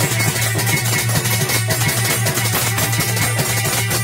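Amplified live Dhola folk music: an ensemble with a plucked string instrument plays over a fast, steady beat.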